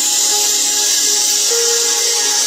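Background worship music of slow, sustained keyboard chords. A loud, steady hiss lies over it for the whole stretch.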